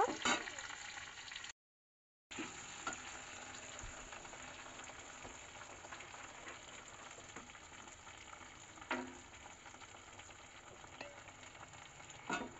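Onion pieces sizzling in hot oil in a steel kadai, with a steel spatula now and then scraping against the pan as they are stirred. The sound cuts out completely for a moment about a second and a half in.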